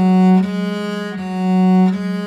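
Bass viol (viola da gamba) bowed slowly in long, sustained notes, a slow run-through of a string-crossing passage. Each bow stroke swells and then eases, with smooth bow changes about every second.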